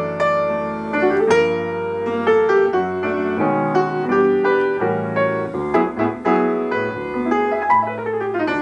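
Grand piano played solo: chords over sustained bass notes, with a melody of struck notes ringing on above them.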